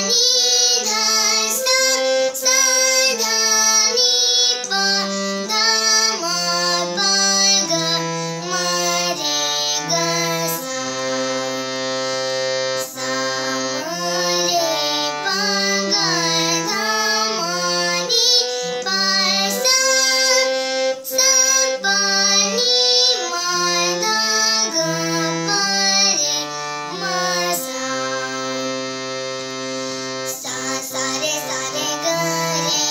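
A young girl singing while playing a harmonium, its reedy notes stepping along under her melody without a break.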